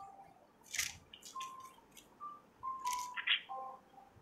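Faint rustles and soft clicks of Bible pages being turned, five or so short bursts spread across the pause, as the passage in Matthew chapter 21 is looked up.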